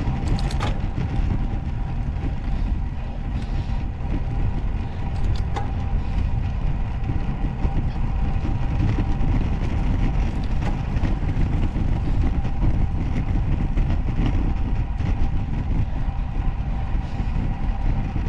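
Steady low rumble of wind and road vibration on a bicycle-mounted action camera's microphone as a road bike climbs on rough asphalt, with a faint steady hum and a few short clicks.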